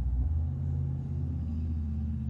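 A steady low mechanical hum, like an idling engine or motor, that shifts slightly in pitch about a third of a second in.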